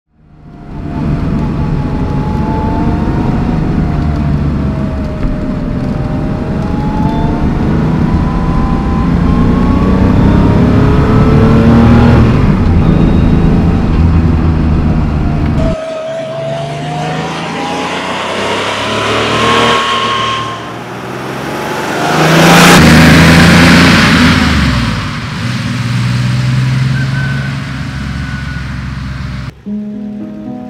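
1986 Porsche 911 Carrera 3.2's air-cooled flat-six being driven hard, its pitch rising through each gear and dropping back at the shifts several times. About two-thirds through comes the loudest burst of revs.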